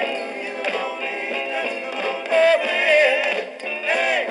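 A 1960s group soul record played from an original vinyl 45: male vocals held and bent over the band, with no clear words. The sound lacks deep bass and top treble.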